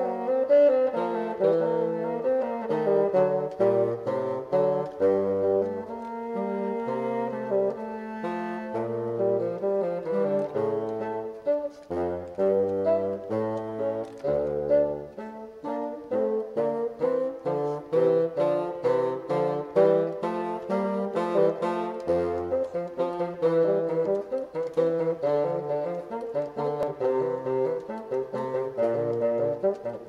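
Bassoon duet: two bassoons play interweaving lines, one in the tenor range and one lower, in a stream of detached, moving notes.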